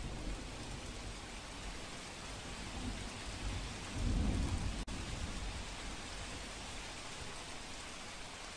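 Steady heavy rain with a low rumble of thunder that swells about four seconds in.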